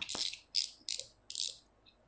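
Front drag knob of a Kenzi Ferrari spinning reel clicking as it is twisted off by hand: four short ratcheting bursts, one for each turn of the knob.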